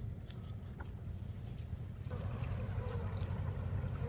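A gill net being hauled in by hand over the side of a wooden boat in a strong river current, with water splashing around the net over a steady low rumble. A broader wash of water noise comes in about halfway.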